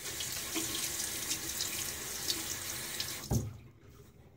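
Tap water running into a bathroom sink, splashing as a safety razor is rinsed under it. The flow stops a little over three seconds in, with one sharp knock.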